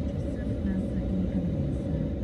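Steady low rumble inside a car's cabin while stopped in traffic: the idling engine and the surrounding traffic.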